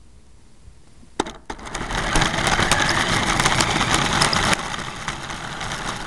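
Remote-control car's motor and drivetrain kicking in about a second in with a few clicks, then running loud with many small clicks as the car drives, heard from a camera riding on the car; it eases a little past the four-second mark.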